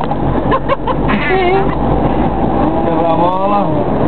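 Car driving on a city street, heard from inside the cabin: a steady low engine and road rumble, with voices exclaiming over it.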